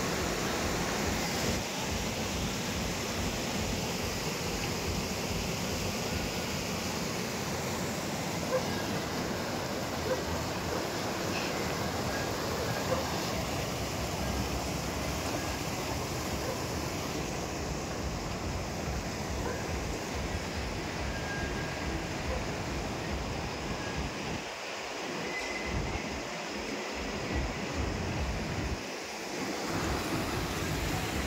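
Mountain stream rushing over boulders and through small rapids: a steady hiss of flowing water, with wind buffeting the microphone as a low rumble.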